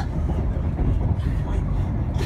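Moving passenger train heard from inside the carriage: a steady low running rumble.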